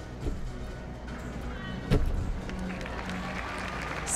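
Gymnast's feet landing on a balance beam after leaps: a light thud just after the start and a heavier thud about two seconds in, over arena crowd noise and background music.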